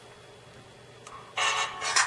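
Music starting to play through a smartphone's small built-in speaker about a second and a half in, thin and without bass, after a short faint click.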